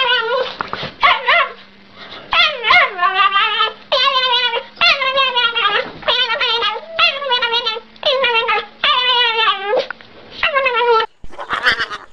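Small dog giving a run of drawn-out, wavering whine-howls, one after another, each sliding down in pitch at its end. They stop about a second before the end.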